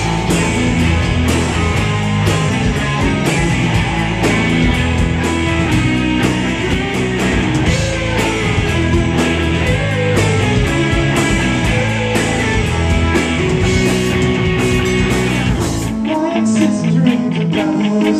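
Live rock band playing an instrumental passage: electric guitars, electric bass and drum kit. About two seconds before the end the low end drops away, leaving electric guitar playing on its own.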